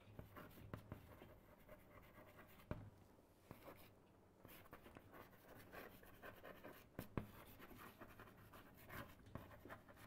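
Faint scratching of handwriting in short strokes, with a few light taps.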